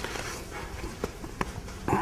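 A small book being handled and leafed through close to a clip-on microphone: a few soft clicks and taps, then a louder rustle near the end.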